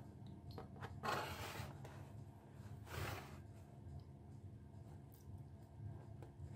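Two brief scrapes, about a second in and again about three seconds in, of a pen and a steel ruler moving over pizza-box cardboard while lines are marked out, with a few faint ticks over a low steady room hum.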